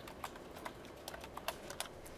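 Computer keyboard typing: a run of about ten faint, irregularly spaced keystrokes as a short line of code is entered.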